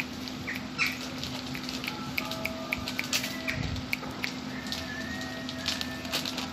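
A cat crunching dry kibble from a bowl: many short, irregular clicks. A steady low hum and a few faint whistle-like tones sit underneath.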